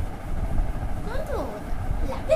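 High-pitched cooing voice sliding up and down in pitch in a couple of short sing-song phrases about a second in, over a steady low rumble.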